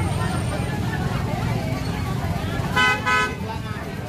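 Two short blasts of a vehicle horn about three seconds in, over steady market chatter and a low rumble.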